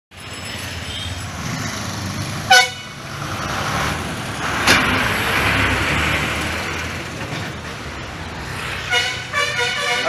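Road traffic with a bus engine running close by and passing, one short loud horn blast about two and a half seconds in, then a run of quick horn toots near the end.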